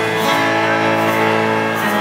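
Live acoustic pop band playing, led by strummed acoustic guitars over held keyboard chords, at a steady loud level.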